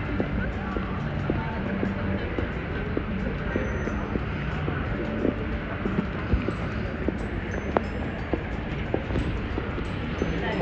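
Outdoor street ambience: a steady wash of traffic noise and wind on the microphone, with indistinct background voices and scattered footstep clicks.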